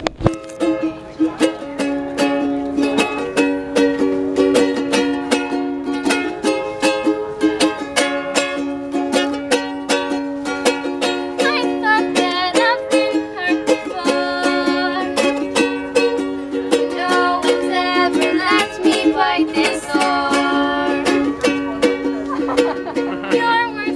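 Two ukuleles strummed together in a steady, even rhythm, playing a chord-based tune.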